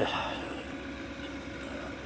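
Intex sand filter pump running with a steady, even hum.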